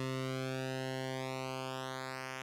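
Behringer Cat analog synthesizer oscillator holding one steady low buzzy note while its pulse width is slowly narrowed by hand. The tone gradually thins and grows quieter as the pulse shrinks toward the point where the waveform disappears.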